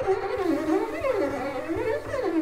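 Improvised acoustic-electronic music: a bowed string instrument sliding up and down in pitch in repeated swooping glissandi, over a faint low pulsing.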